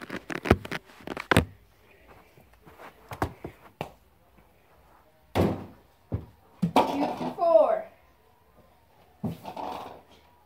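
Thumps and knocks of a small toy football being shot at a toy basketball hoop and dropping onto the carpeted floor, several in quick succession in the first second and a half and more around the middle. About seven seconds in comes a short wordless voice sound with a falling pitch, the loudest thing here.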